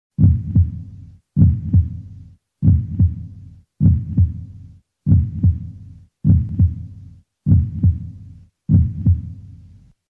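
Heartbeat sound effect: a deep double thump, lub-dub, repeated eight times about a second and a quarter apart, each one fading out before the next.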